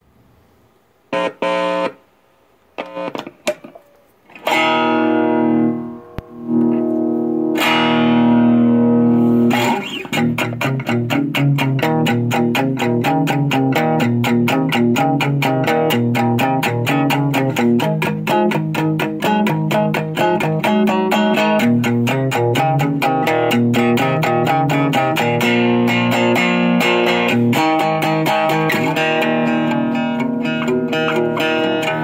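Amplified three-string cigar box guitar with an under-saddle disc piezo pickup: a few short plucks, then two ringing chords, then from about ten seconds in a steady, fast-picked riff.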